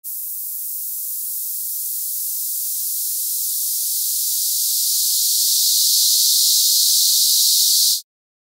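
Synthesizer noise through a high-pass filter: a steady hiss with all its low end cut away below about 2–3 kHz. As the cutoff comes down a little and the filter's resonance (Q) is raised, the hiss grows gradually louder and concentrates around the cutoff, then cuts off suddenly at the end.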